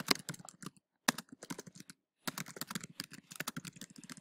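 Typing on a computer keyboard: quick runs of keystrokes with short pauses, the longest about two seconds in.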